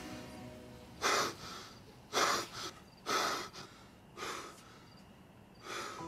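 A man breathing hard and gasping after jolting awake from a nightmare: five heavy breaths, about one a second.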